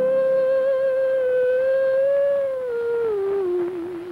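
A woman's voice humming one long note with light vibrato, unaccompanied, then sliding down in steps to a lower note in the last second and a half.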